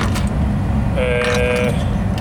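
A man's drawn-out hesitation sound, a level 'um' lasting under a second, about a second in, over a steady low rumble.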